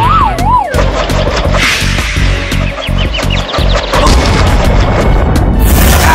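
Cartoon action soundtrack: loud music laced with crash and impact sound effects, opening with a warbling tone that falls in pitch over the first second, with a quick run of short rising chirps about halfway through.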